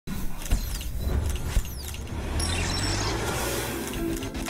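Television logo-sting sound effects: two deep hits about a second apart, each followed by a falling whoosh, then a sustained low rumbling swell with glittering high tones over it.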